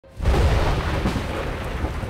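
A loud, deep rumble with a hiss over it, coming in suddenly just after the start and holding steady: a film trailer's opening sound effect.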